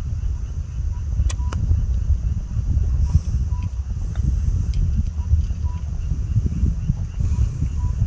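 Low, uneven rumble of wind buffeting the microphone, with faint short high calls now and then and a sharp click or two, one about a second in.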